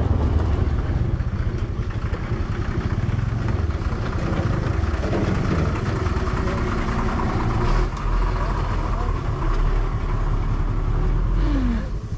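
Motor scooter running steadily along a road, with wind rushing over the microphone.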